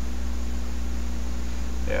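Steady low hum with a faint hiss over it, unchanging in level: background noise on the recording, with no other event. A voice starts a word right at the end.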